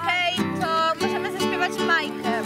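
Girls' voices singing a song together, accompanied by a strummed acoustic guitar.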